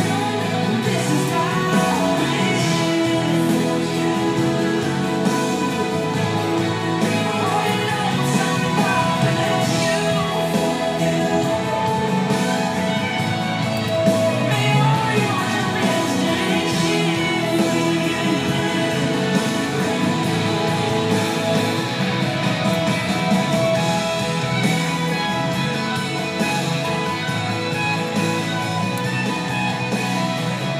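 A song with singing and guitar, played steadily for a slow dance.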